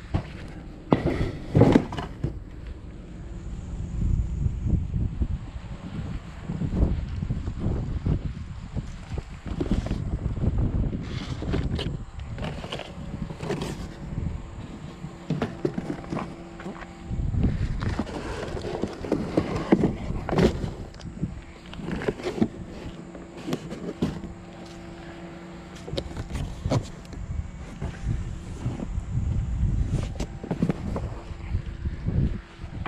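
Handling noise: irregular knocks, clunks and rustling as salvaged items are moved around and set into the back of a van, with footsteps on pavement and a faint steady hum in the second half.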